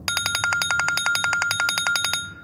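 A telephone ringtone: a fast, even, bell-like trill at a steady pitch, ringing for about two seconds and then breaking off, as in a phone's ring cadence.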